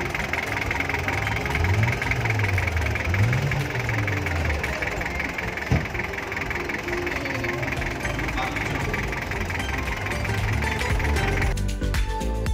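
A car engine running, its revs rising and falling a couple of times, under the chatter of a crowd. Music cuts in just before the end.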